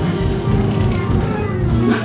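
Live jazz combo playing, with electric guitar, electric bass and drum kit; a note slides upward near the end.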